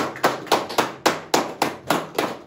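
One person clapping his hands in a steady rhythm, about four claps a second.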